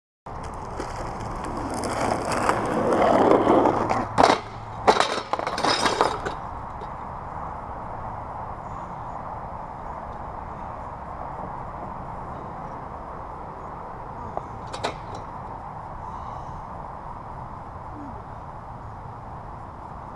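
Skateboard wheels rolling over rough, cracked asphalt, growing louder, then several sharp clatters about four to six seconds in as the board and rider hit the pavement in a fall. After that there is only a steady hiss, with one click about fifteen seconds in.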